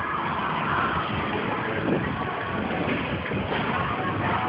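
Steady rushing and rumbling of a moving bicycle ride: wind on the microphone and tyres rolling over the pavement.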